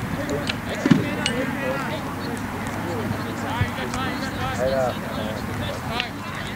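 Distant voices of players and sideline spectators calling and shouting across an open lacrosse field, with one sharp knock about a second in.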